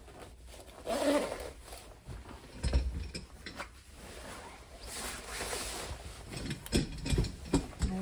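Jacket fabric rustling and a zipper being pulled as a jacket is fastened and a fabric backpack is handled, in irregular swishes with a few light clicks and knocks near the end.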